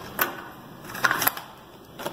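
A few soft clicks and rustles of hands handling craft materials: paper and a pack of sketch pens being picked up and moved.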